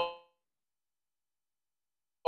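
Dead silence, apart from a man's last spoken syllable fading out with a brief ringing tail in the first quarter second.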